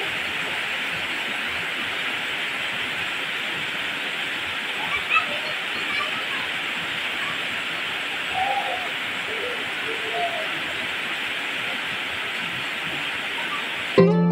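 Heavy rain falling steadily on garden foliage and waterlogged ground, an unbroken hiss.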